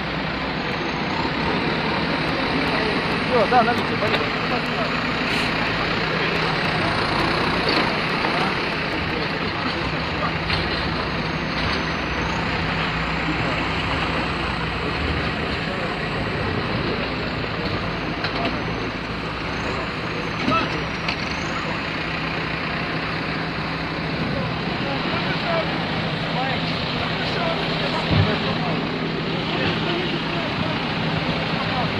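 Heavy diesel vehicles running steadily with a low engine hum, with people talking in the background.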